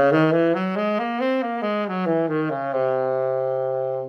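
Tenor saxophone playing a C altered scale: quick single notes stepping up the scale and back down to the starting note, which is held for over a second before it stops.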